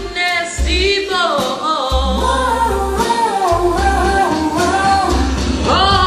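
Female voice singing long, sliding vocal runs with added reverb over a backing track with sustained bass notes.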